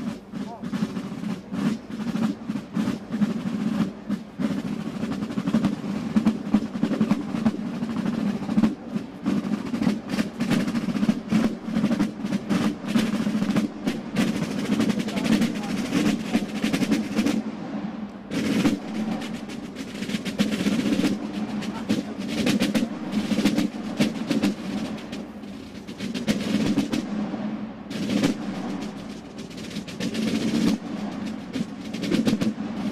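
A corps of Basel drums, tall rope-tensioned side drums, playing a march in the Basel drumming style: dense, rapid strokes and rolls in unison, with brief lighter passages about two-thirds of the way through and again near the end.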